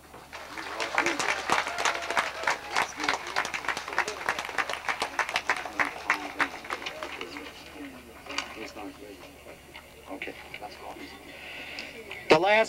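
Crowd of people clapping, building within the first second, then thinning out and dying away after about six or seven seconds, with a few voices among the claps.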